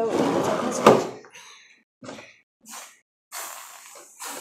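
Plastic handling of a Pie Face game toy, with a sharp click about a second in, then short hissing spurts from an aerosol can of whipped cream being sprayed onto the toy's paddle near the end.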